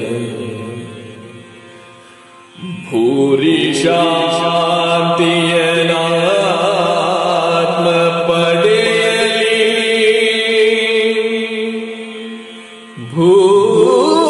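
Male voice singing a Yakshagana bhagavathike melody in long, drawn-out notes with wavering pitch. One phrase fades out in the first couple of seconds, a new one begins about three seconds in and dies away near the end, and the next starts just before the end.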